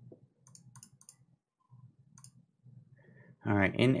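A quick run of sharp, light clicks at the trading computer, then one more click a little after two seconds in: the order entry that puts on a short position in the stock.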